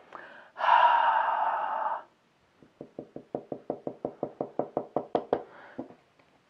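A long breathy exhale. Then a rapid, even run of about twenty-five light knocks, roughly nine a second, from fingers tapping a tabletop.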